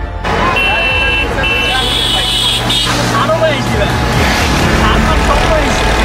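Live sound from an open auto-rickshaw on the move through a street: steady road and vehicle rumble with people's voices over it. Two short high-pitched beeps come about half a second and a second and a half in.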